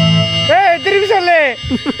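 Electronic keyboard music over the stage PA holding a chord that cuts off about half a second in, followed by a man's amplified voice through the microphone with its pitch sliding up and down for about a second, then a short laugh near the end.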